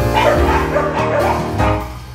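A dog barking several times, mixed with background music.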